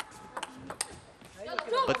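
A table tennis ball clicking sharply off bat and table a few times in a short exchange, the clicks spaced irregularly in the first second.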